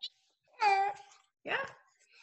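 An infant's high-pitched squeal, about half a second long and bending down in pitch, followed near the end by a short rising vocal sound, heard through video-call audio.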